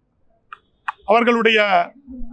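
A man speaking in Tamil. A short pause is broken by two small clicks before he resumes talking about a second in.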